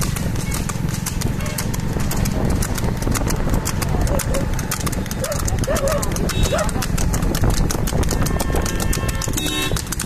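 Water buffalo's hooves clattering on asphalt in quick, even beats as it pulls a cart at speed, over a steady low rumble. Short shouts come in about halfway.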